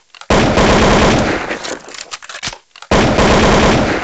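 Intro sound effect: two loud bursts of rapid rattling noise, the first about a second and a half long starting just after the start, the second about a second long near the end.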